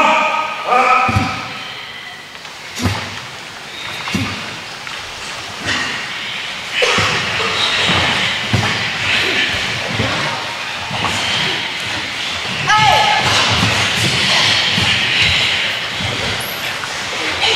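Dozens of karate students practising kata at once in a gym hall: repeated thuds of feet stamping on the wooden floor, and a din of voices with a couple of sharp shouts, echoing in the large room.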